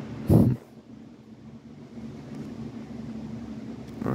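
Steady low room hum, with one short loud thump about a third of a second in.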